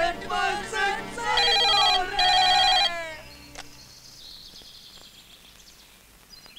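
The tail end of a sung film song, then a telephone ringing twice in two short rings about a second and a half in, after which only faint room noise remains.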